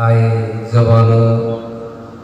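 A man chanting into a microphone in two long, held phrases, the second fading out near the end: melodic Arabic recitation of the Quran.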